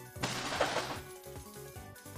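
Slot game's big-win celebration music playing while the win counter tallies up, with a loud rushing noise burst about a quarter of a second in that lasts about half a second.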